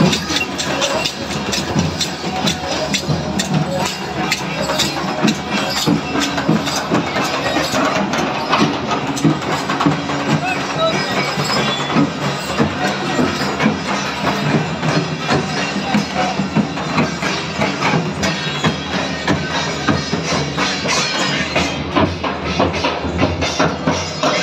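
Live folk procession music: hand drums, including a large chang frame drum, beaten in rapid, steady strokes with clattering percussion, under the voices of a crowd.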